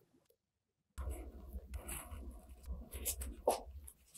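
Silent for the first second, then plastic-gloved hands working soft dough on a worktop: rubbing and light scratching with small clicks, and one louder tap about three and a half seconds in.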